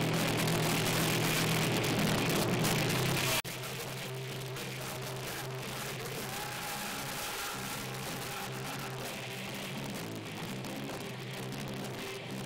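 A live band playing loud, dense music. It cuts suddenly to a quieter passage about three and a half seconds in.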